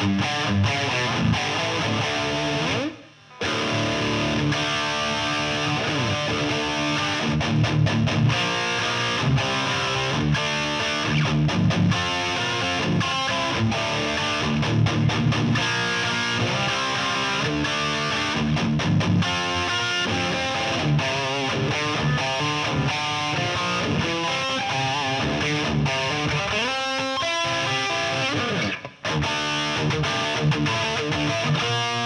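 Electric guitar played through a cranked Marshall JCM800 head and 4x12 cabinet: a heavily distorted 1980s hard-rock tone, playing riffs and lead lines with bent notes. The playing stops briefly twice, about three seconds in and near the end.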